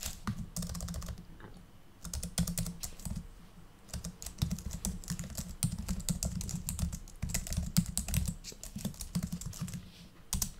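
Typing on a computer keyboard: a quick, irregular run of key clicks, with a brief pause about a second and a half in before the typing picks up again.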